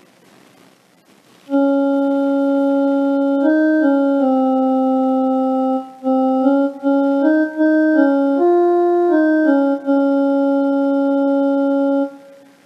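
Electronic keyboard playing the opening hum phrase of the song as sargam notes in raga Yaman, pitched with Sa on C-sharp: Sa Re Sa Ni, then Ni Sa Sa Re Re Sa Ga Re Sa Sa. The notes are steady and held, stepping up and down by small intervals. They begin about a second and a half in, with a short break in the middle.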